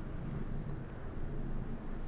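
A steady low rumble of background noise with no distinct event in it; the thick soup being poured makes no clear sound.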